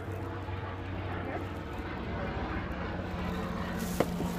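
A steady low engine drone in the background, even in level throughout.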